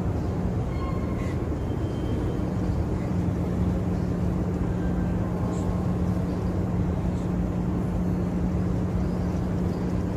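Steady ambience of a large, crowded prayer hall: a constant low hum under a faint murmur of people.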